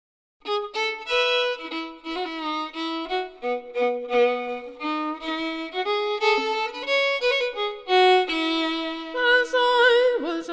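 A fiddle playing a short instrumental introduction to a folk ballad, in quick short notes, often two at once. It starts about half a second in.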